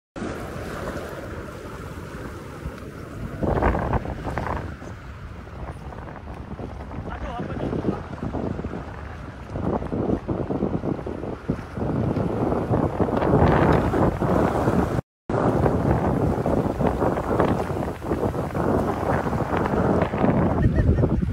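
Wind buffeting the microphone over sea water sloshing in shallow surf, in uneven gusts, with a brief dropout about three-quarters of the way through.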